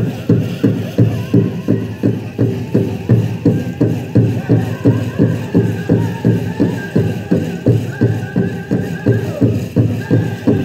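Powwow drum and singers: a big drum struck in an even beat, about three strokes a second, under voices singing long held notes.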